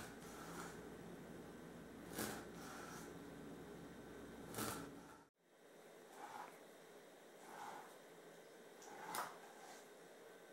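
Faint knife strokes of a sharp knife scoring a scaled shad fillet across its fine bones on a cutting board: a few soft ticks a couple of seconds apart.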